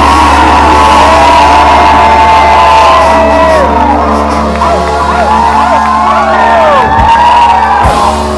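Loud music with a steady deep bass, with voices whooping and shouting over it in rising and falling calls.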